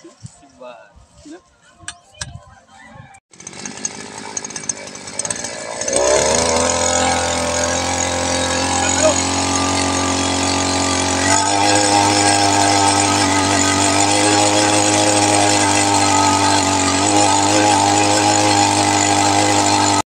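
Handheld petrol earth auger's two-stroke engine coming in about three seconds in, then revving up to high speed about six seconds in and running loud and steady as the auger bores into the soil.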